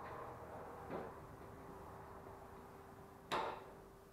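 Two knocks, a soft one about a second in and a sharper, louder one near the end, over a faint steady hum.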